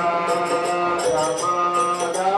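A man chanting a devotional mantra melody in kirtan style, with small hand cymbals (kartals) clinking in a steady rhythm of about four or five strikes a second.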